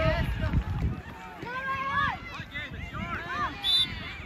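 Overlapping distant voices of spectators and young players calling out across an open field, with a low rumble in the first second.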